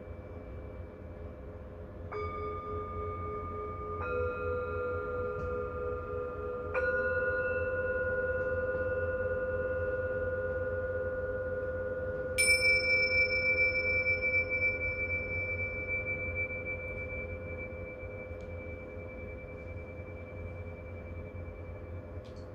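Tibetan singing bowls struck with a mallet three times, about two seconds apart, each strike adding a new ringing tone over the bowls already sounding. About twelve seconds in, a pair of tingsha cymbals is clashed once, the loudest sound, a bright strike that rings on as a high, steady tone slowly fading.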